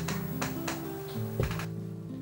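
Background music of slow, held notes that step from one pitch to another, with a few light clicks in the first second and a half.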